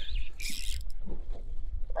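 Wind buffeting the microphone in a low, steady rumble, with a brief hiss about half a second in.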